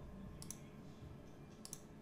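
Two faint computer mouse clicks about a second apart, each a quick double tick.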